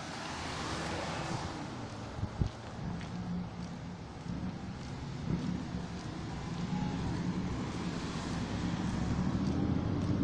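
Street traffic: a car passes at the start, then a motorcycle engine's low note grows steadily louder over the last several seconds.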